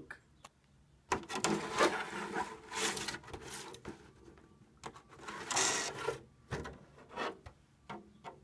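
Clear, unpainted polycarbonate RC truck body being handled and turned over, its thin plastic rubbing and flexing in irregular bursts of rustling with short pauses between.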